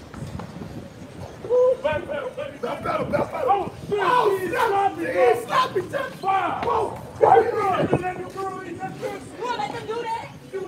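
Excited shouting and yelling from several voices, starting about a second and a half in, loud and without clear words.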